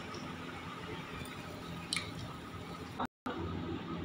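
Faint low simmering of liquid around rice in a pot on a gas stove, a steady hiss with a few small ticks. The sound drops out for a moment about three seconds in.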